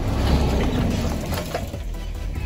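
Range Rover Sport driving across a lawn with a giant spiked aerator wheel punching the turf: a rumbling, clattering noise of engine, tyres, spikes and flung clods, fading as it moves away.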